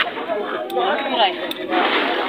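Speech only: men talking, their words not made out.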